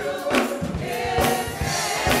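Gospel choir singing with instrumental accompaniment, hands clapping on the beat.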